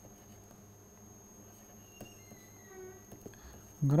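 Faint room tone with a steady high-pitched electronic whine and a low hum, broken by a few soft clicks of a stylus on a pen tablet as words are written. A brief faint pitched sound comes about halfway through.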